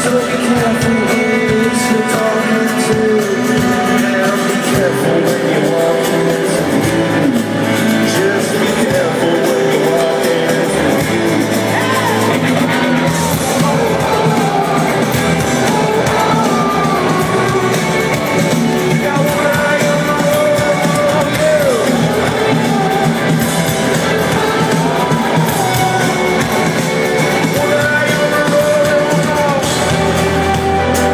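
Rock band playing live at stadium volume: an acoustic guitar and the full band, with a male voice singing over them.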